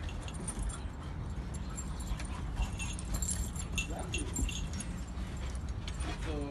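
Huskies play-wrestling: collar chains and tags jingling with scattered small clicks, and a brief faint whine about four seconds in, over a steady low rumble.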